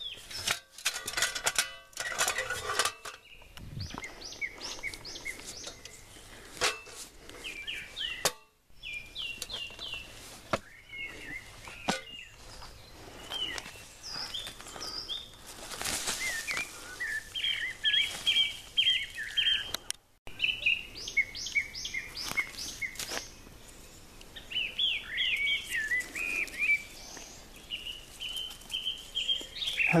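Garden songbirds singing and calling, with series of short repeated chirping notes throughout. Occasional sharp clicks and a brief burst of rustling about halfway through.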